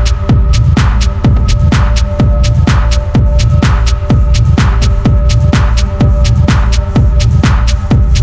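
Hard minimal techno from a DJ mix: a steady pounding beat of about two strikes a second, with lighter ticks between the beats, over a deep droning bass and a held synth tone.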